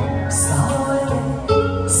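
Karaoke backing track of a Japanese enka ballad, with strings and guitar over a steady bass, and a woman singing along into a microphone, her voice coming in plainly near the end.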